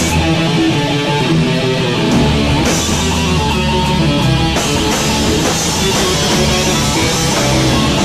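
Live rock band playing loud heavy, punk-metal music: electric guitars and bass over drums, with the cymbals getting brighter about two and a half seconds in.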